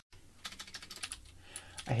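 Computer keyboard typing: a quick, light run of key clicks. A man's voice comes in near the end.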